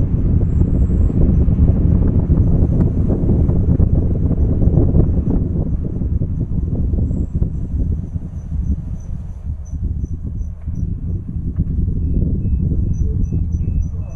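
Steady low rumble of a car driving, heard from inside the car, with faint high-pitched insect chirping repeating evenly over it.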